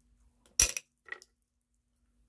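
A crystal stone set down on a hard tabletop: a sharp clack about half a second in, followed by a lighter click about half a second later.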